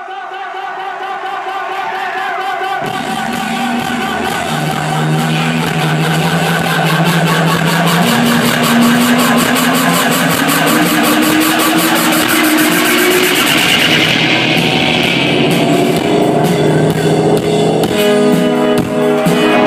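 Live electronic dance music from a band on stage, heard from the audience. A sustained chord fades in, and about three seconds in a fast pulsing beat and a bassline stepping up in pitch join it.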